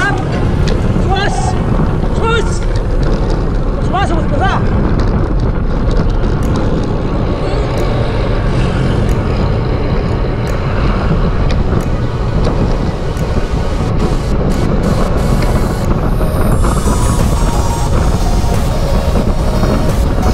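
Loud, steady wind rush buffeting the microphone of a road bike moving at race speed, with a few short voice calls in the first few seconds.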